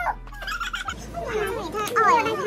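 High, warbling voice sounds whose pitch wavers up and down, growing louder near the end.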